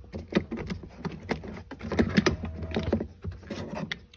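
A grey plastic trim cover being worked loose and lifted off a floor anchor in a car's interior: a string of irregular clicks, knocks and scrapes of hard plastic.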